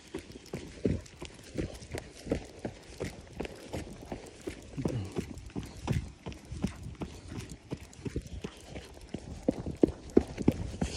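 Running footsteps on a packed dirt trail: steady, even thuds, about two to three a second.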